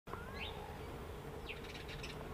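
A faint, steady hum of honeybees clustered outside the hive entrance, with birds chirping in the background: a short rising chirp about half a second in and another near the end.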